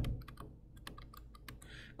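Stylus tapping and clicking on a tablet screen while handwriting a note: a series of faint, irregular light clicks.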